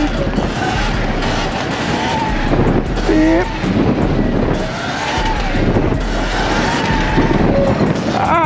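Wind rushing over the microphone of a moving Sur-Ron electric dirt bike, with the motor's whine rising and falling as the bike speeds up and slows. A short voiced call cuts in about three seconds in.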